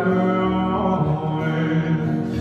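Acoustic guitar and violin playing live together, with long held notes droning under the chords.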